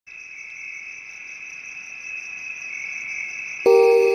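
Crickets chirping in a steady, high trill that grows gradually louder. Near the end, soft bell-like mallet notes of ambient music come in suddenly and are louder than the crickets.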